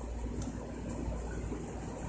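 Room tone: a steady low hum under a faint, even background hiss.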